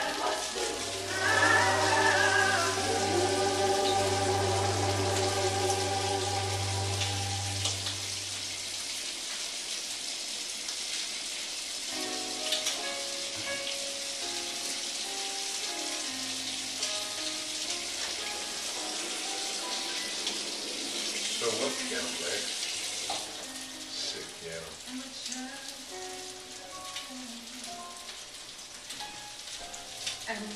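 Pancake batter frying on a griddle with a steady sizzle, under a background song whose bass is strongest in the first eight seconds or so.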